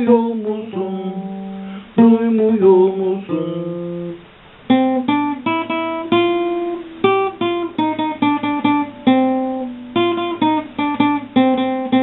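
Instrumental passage on a plucked string instrument. It starts with slower ringing notes and chords, then after a brief dip about four seconds in turns to a quicker run of picked notes, several a second.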